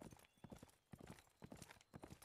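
Faint hoofbeats of a horse at a gallop, in quick clusters of knocks about twice a second.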